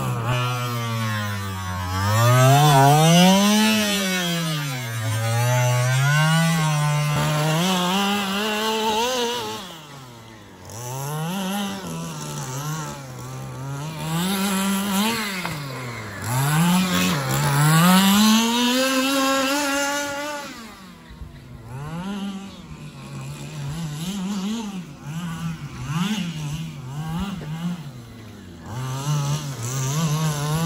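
The 25cc two-stroke petrol engine of an FG Marder RC buggy being driven on the track, its revs rising and falling over and over as the throttle is opened and closed. Near the end the revs come in quicker, shorter blips.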